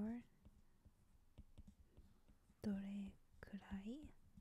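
Stylus tapping and sliding on a tablet screen while handwriting Japanese characters: a run of faint, irregular clicks. A soft voice speaks briefly at the start and again about three seconds in.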